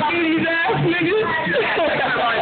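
Men's voices talking and calling out over each other, with music playing underneath.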